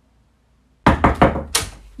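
A quick run of about five loud knocks on a bedroom door, the last the loudest, a wake-up knock.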